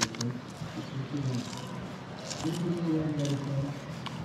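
Filleting knife slicing through a luderick's flesh along the backbone, soft and wet, with a few faint clicks. A man's voice hums briefly about two and a half seconds in.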